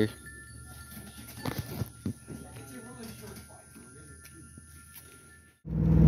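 Faint background with a few sharp clicks and faint distant voices. Near the end a sudden cut brings in a Mazda Miata's four-cylinder engine running loud and steady; it has a little bit of a miss.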